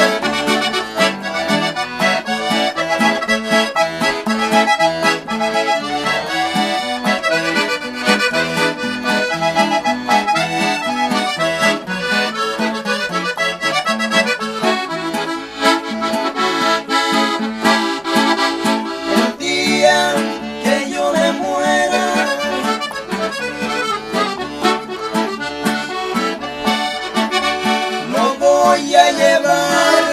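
Hohner piano accordion playing a lively instrumental melody over acoustic guitar strumming, in a norteño-style song. Near the end, two men's voices come in singing.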